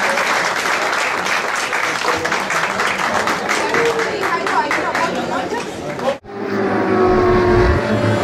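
Crowd applauding, with many individual hand claps and some voices. About six seconds in it cuts off suddenly and electronic intro music begins.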